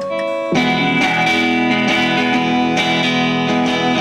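A live indie rock band with electric guitars playing. A few held notes ring first, then about half a second in the full band comes in together with loud, sustained chords.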